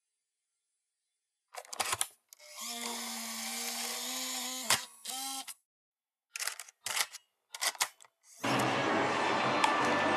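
Mechanical clicks and a motor whir of a video tape mechanism, like a camcorder or VCR, with more clicks after it. Then, about eight and a half seconds in, the steady hiss and hum of old home-video tape audio begins.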